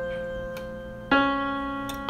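Slow background piano music: single struck notes ring and fade, with a new note about halfway through.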